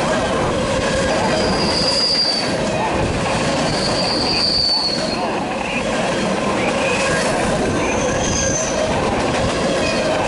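Empty centerbeam flatcars and boxcars of a freight train rolling past close by: a steady, loud rumble and rattle of steel wheels on the rails. Brief high-pitched wheel squeals come about two seconds in, again around four to five seconds, and once more near the end.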